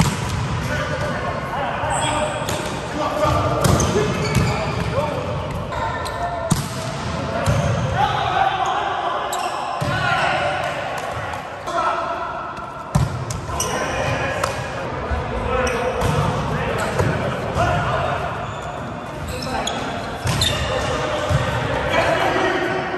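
Voices and chatter in an echoing sports hall, with scattered sharp thuds of a volleyball being hit and bouncing on the court.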